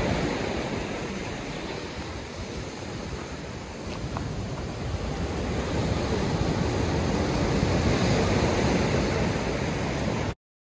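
Sea surf breaking and washing over rocks and sand on a slightly choppy sea. It dies down a little a couple of seconds in, then builds again after about five seconds.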